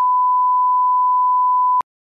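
Censor bleep masking a spoken swear word: one steady, loud beep tone that cuts off sharply near the end.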